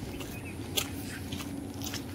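Faint, steady low rumble of background and handling noise on a handheld phone microphone, with one light click a little under a second in.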